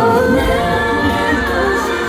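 A female vocalist singing live into a handheld microphone over backing music, amplified through an arena sound system; her voice slides up into a held note near the start.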